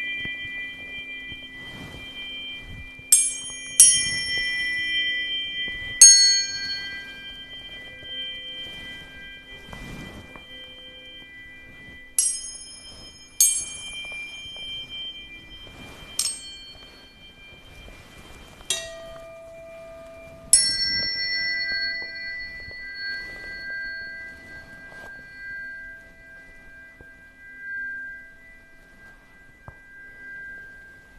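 Tuning forks struck again and again, about eight times over the stretch, each strike a bright ping that leaves long pure high tones slowly fading and overlapping. A low steady hum lies beneath.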